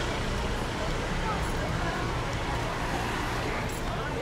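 Steady street traffic noise: car engines and tyres running on an open road, with faint voices of passers-by.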